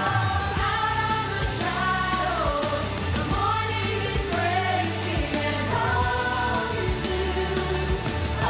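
Several voices singing a show tune over backing music, holding long, bending melodic notes above sustained bass chords.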